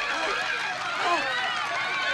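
A circus audience cheering and calling out, many excited voices at once.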